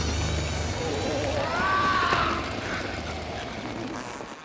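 A dragon's huge fart: a long rushing blast of wind over a low rumble, released as its constipation is cleared. A voice cries out in the middle of it, and the rush tails off near the end.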